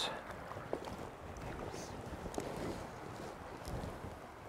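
Small mountain stream flowing over a shallow riffle: a steady rush of moving water, with a few faint ticks.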